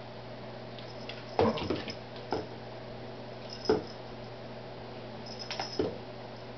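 A cat batting and pulling at a toy crow on a tile floor, with short knocks and scuffs: a cluster of them about a second and a half in, a single sharp knock near four seconds, and a few more near the end.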